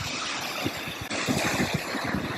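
Small sea waves breaking and washing up the sand at the water's edge, a steady rushing hiss, with wind buffeting the microphone.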